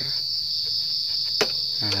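Steady high-pitched insect chorus, with one sharp click about one and a half seconds in as a motorcycle's exhaust muffler is twisted free of its pipe.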